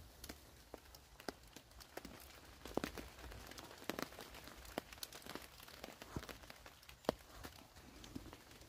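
Fog water dripping from the trees: scattered, irregular drips and taps on the tarp and the dry leaf litter. The loudest falls about seven seconds in.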